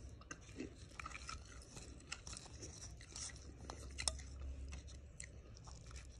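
A person chewing crispy fried fish close to the microphone: soft, irregular crunches and mouth clicks, with a slightly sharper crunch about two-thirds of the way through.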